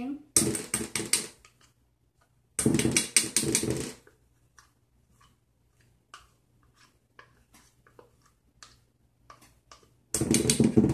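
Plastic spatula scraping glue out of a plastic measuring cup into a metal bowl: two loud scraping spells, each about a second long, followed by faint scattered clicks and taps.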